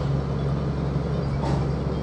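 Steady low machine hum, with a brief knock about one and a half seconds in.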